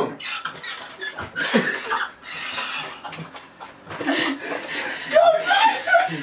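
A small group of people laughing, mixed with bits of indistinct talk.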